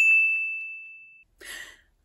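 A single bright ding sound effect: one clear high tone that strikes suddenly and rings out, fading away over about a second.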